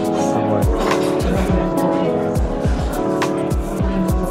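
Music with a steady beat: held chords over a regular low drum pulse.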